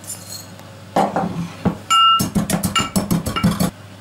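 Metal pestle pounding juniper berries and black peppercorns in a brass mortar. One strike rings out with a clear metallic tone about two seconds in, followed by a quick run of strikes, several a second, that stops shortly before the end.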